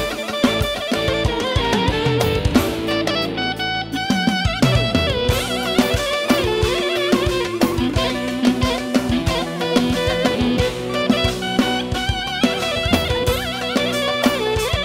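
Live band playing dance music: a plucked-string lead with wavering melodic lines over a steady drum-kit beat.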